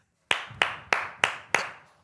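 One person clapping alone: five hand claps, about three a second, with no one joining in.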